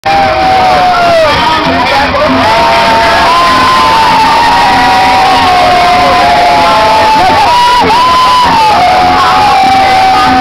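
A large parade crowd cheering and whooping loudly, with many long overlapping cries rising and falling over a steady din.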